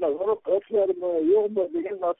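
Speech only: a person talking in a radio discussion, with no other sound.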